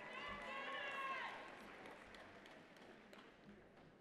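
A faint voice speaking off-microphone in a large hall, fading out about a second in, with a few light clicks scattered through.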